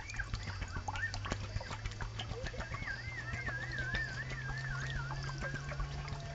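A yellow plastic jerrycan filling while held under the water of a stream: bubbling and gurgling ticks over a low steady hum. A wavering high call runs for about three seconds from about halfway, falling slightly in pitch.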